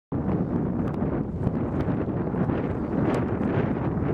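Wind buffeting the camcorder's microphone, a steady low rumble.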